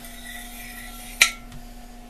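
Electric potter's wheel humming as it turns slowly while a cut-off wire is drawn under a freshly thrown mug to free it from the wheel head, with one sharp click about a second in.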